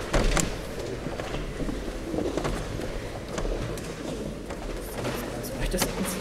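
A group of choir members walking off the chancel: footsteps, shuffling and low murmured talk in a church, with a few sharp knocks and clicks, the loudest just after the start and near the end.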